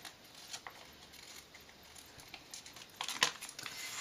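Scissors cutting the binder-hole strip off a thin clear plastic sheet protector: faint snips and crackles of the plastic, louder about three seconds in as the cut finishes.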